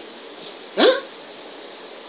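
A man's single short questioning interjection, 'Hein?', rising in pitch, about a second in, over low room hiss.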